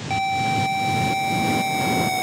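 Snowmobile engines running, a rough pulsing drone, with a steady electronic synth tone starting just after the beginning and holding.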